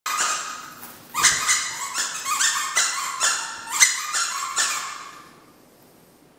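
Chihuahua puppy chewing a plush squeaky toy, its squeaker squeaking again and again, about two squeaks a second, then stopping near the end.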